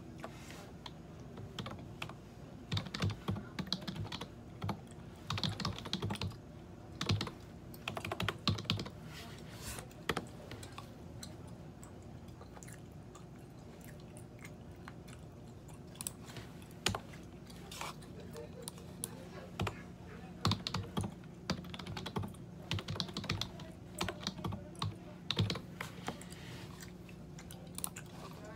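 Computer keyboard typing in quick runs of key clicks, pausing for several seconds midway before starting again. A steady low hum sits underneath.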